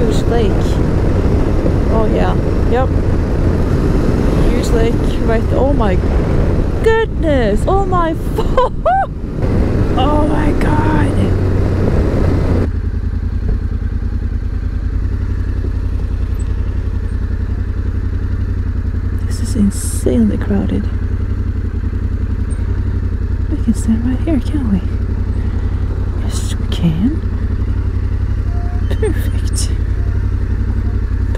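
Yamaha Ténéré 700's parallel-twin engine and rushing wind at cruising speed on an open road. About twelve seconds in the sound cuts to the same engine running at low revs, a steady low hum with brief distant voices.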